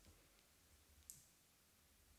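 Near silence: room tone, with one faint, short click about a second in.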